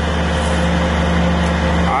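Steady low motor hum with a few constant tones, unchanging throughout.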